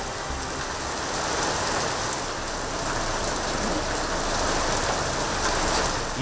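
Rain falling steadily on a wet road: an even hiss of rain with no breaks.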